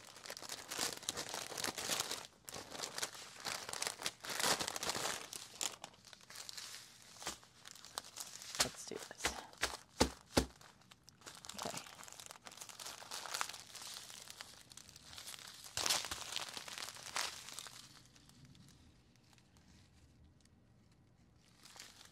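Clear plastic packaging crinkling and rustling in irregular bursts as a strip of diamond-painting drill bags is unwrapped and handled, with a few sharp clicks about halfway through. The rustling dies down near the end.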